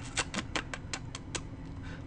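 Light clicking of computer keys: about eight quick clicks in the first second and a half, then stopping.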